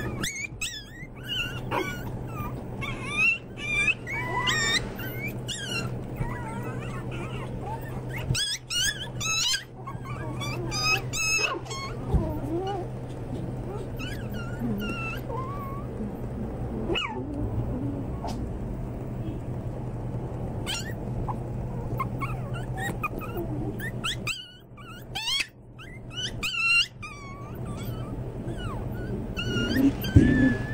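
A litter of young puppies whining and yipping, with many short, high squeaky cries overlapping. The cries are busiest in the first ten seconds or so and again about three-quarters of the way through. A steady low hum runs beneath them.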